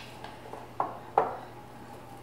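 Wooden spoon stirring a chunky sausage and apple mixture in a bowl, with two short knocks of the spoon against the bowl about a second in, the second one louder.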